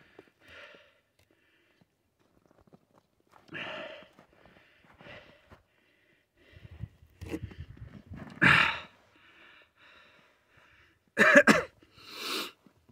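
A person coughing and sniffing in a few short, separate bursts, the loudest about two-thirds in and a quick pair near the end.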